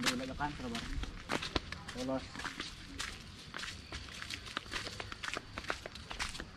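Footsteps on a dirt path strewn with dry leaves, an irregular run of short clicks and scuffs as people walk, with brief faint voices near the start and again about two seconds in.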